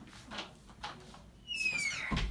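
Faint rustling of a shirt being slipped off, then a short high squeak falling in pitch near the end.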